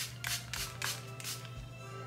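A hand-pumped spray bottle misting setting lotion onto a section of hair: about five quick hissing squirts in the first second and a half, then it stops. Soft background music plays underneath.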